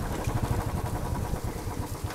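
Royal Enfield Classic 350 single-cylinder four-stroke engine running at low revs as the motorcycle rolls slowly over a dirt road, an even low beat of about ten firing pulses a second.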